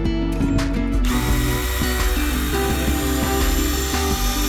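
Makita cordless drill running a small bit into the RV roof to make a pilot hole, starting about a second in, over background music.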